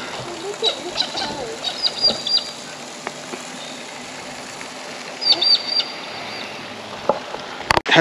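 Small birds calling: two short runs of quick, high repeated chirps, about three seconds apart, over a steady outdoor background hum.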